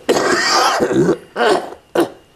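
An elderly man's harsh, raspy vocal burst from the throat, about a second long, somewhere between a throat-clearing and a laugh, followed by a short spoken syllable.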